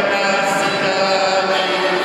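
Live acoustic guitar strumming and piano accordion playing held chords, steady and continuous.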